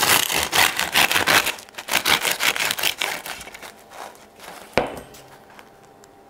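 A knife sawing through a crusty baguette, the crisp crust crackling in a dense run of small cracks. The cracking thins out after about three seconds, and there is one sharp crack near the end.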